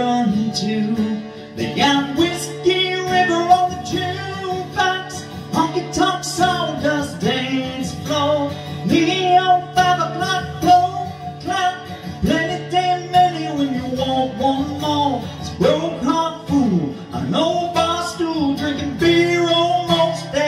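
A man singing a country song while strumming a steel-string acoustic guitar, solo with no other instruments.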